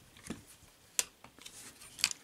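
Plastic and diecast parts of a transforming robot toy clicking and scuffing as they are handled, with one sharper click about a second in.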